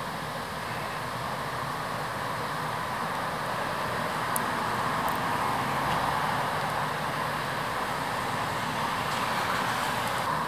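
Road traffic: a steady rush of passing cars that swells in the middle and again near the end.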